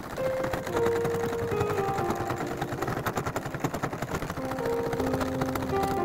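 Domestic sewing machine running steadily, its needle making rapid, even clicks as it stitches through folded heavy black canvas for a bag strap. Light piano music plays over it.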